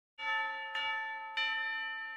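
A bell struck three times, a little over half a second apart, each stroke ringing on and slowly fading under the next.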